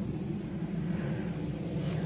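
A steady low mechanical drone with outdoor background noise and no distinct events.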